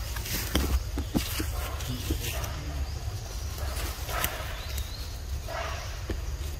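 Leaves and thin branches rustling, with a few sharp clicks and snaps, as a young monkey climbs and hangs in a pile of cut leafy branches, over a steady low rumble.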